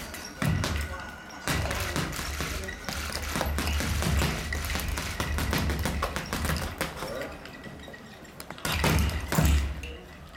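Boxing gloves hitting a double-end bag in fast flurries of punches, the leather ball smacking back and forth on its cords in a rapid run of strikes. The strikes ease off briefly and then come in another loud burst near the end.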